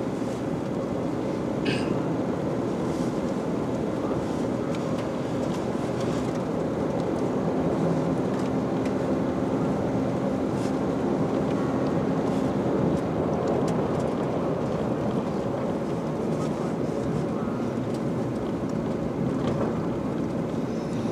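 Steady drone of a Toyota Tacoma pickup heard from inside the cab while driving: engine and tyres on a snow-packed road, with a few faint ticks and rattles.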